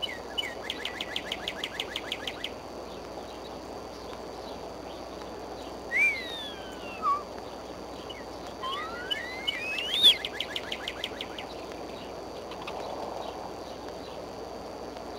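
Bald eagle calling: two runs of rapid, high-pitched chattering notes, about eight a second, with long sliding whistles between them. The loudest is a rising whistle about ten seconds in that runs straight into the second chatter.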